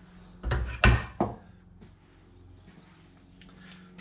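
A few sharp metal clanks from a steel bench vice being tightened, the loudest about a second in, then quiet workshop background.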